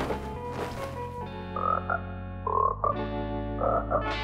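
Cartoon frogs croaking three times, about a second apart, starting a little after a second and a half in, over a held background music chord.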